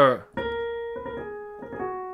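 Piano keyboard playing a slow run of single notes stepping through a scale, each note held about a quarter to half a second, after a brief spoken syllable at the start.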